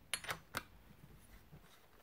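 Three light, sharp clicks of a glow plug wrench and glow plug being handled as the plug is fitted to a nitro RC engine's cylinder head, all within the first half-second.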